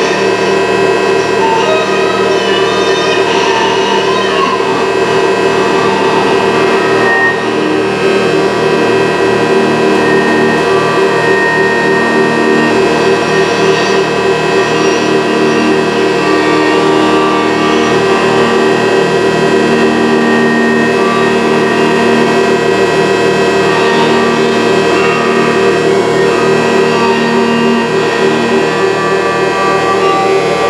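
Experimental noise music: a thick, steady drone of many held synthesized tones generated from painted colours, with short higher tones flickering in and out above it, layered with a bowed acoustic guitar.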